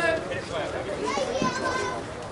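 Overlapping voices of several people calling out and chattering at once, with no clear words.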